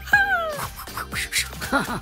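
Light background music with a cartoon character's vocal sound effect: a loud high call gliding downward for about half a second at the start, then short up-and-down chirping sounds near the end.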